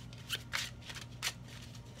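A deck of tarot cards being shuffled by hand: a few short, separate flicks and slides of the cards.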